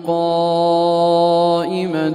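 A male Quran reciter chanting tilawa, holding one long melodic note at a steady pitch that breaks off about a second and a half in, followed by a short breath pause.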